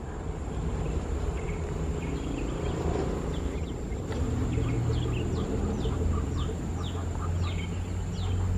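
Steady low rumble of a long train of coal hopper wagons rolling away along the track, with a bird giving a run of short, falling chirps over it from about a second and a half in.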